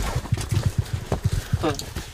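Footsteps and jostled gear as someone walks through a trench: a quick, irregular run of dull, low thumps.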